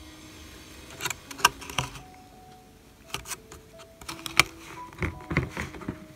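Small brass sharpener parts clicking and knocking against a plastic tub of water as it is handled: a few separate sharp clicks from about a second in, over faint sustained background music.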